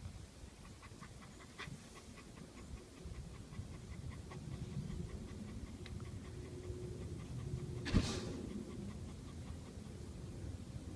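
Central Asian Shepherd dog panting steadily, winded after fighting and killing a ram. A single sharp thump near the end is the loudest sound.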